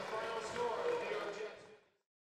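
Faint background voices over a haze of field noise, fading out to silence near the end.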